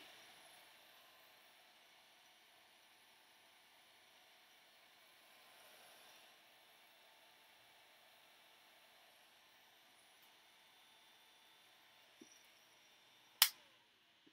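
Digital heat gun blowing faintly and steadily over painted paper to dry the paint. Near the end there is a sharp click, after which the hiss is weaker.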